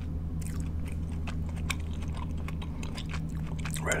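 Close-miked chewing of soft green apple gummy candies, with irregular wet mouth clicks over a steady low hum.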